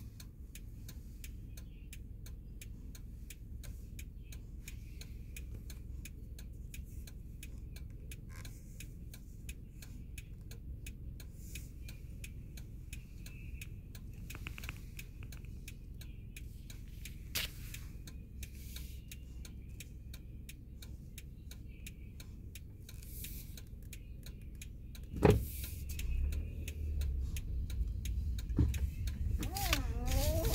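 Low, steady rumble of a car heard from inside the cabin, with a quiet regular ticking running throughout. A sharp knock comes about 25 seconds in, after which the rumble grows louder as the car moves off.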